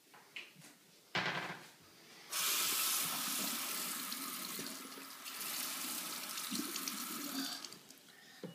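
Water running steadily for about five seconds, starting about two seconds in and stopping near the end, after a brief louder noise about a second in.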